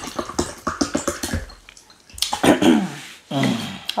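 Close-up wet mouth sounds of chewing a mouthful of fufu with slimy okra soup: a quick run of sticky clicks and squelches in the first second or so. In the middle comes a drawn-out hummed "mm" of enjoyment, the loudest sound, and another short one near the end.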